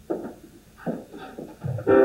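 Stage keyboard music: three separate chords or notes that ring and fade, about a second apart, then fuller, louder playing sets in just before the end.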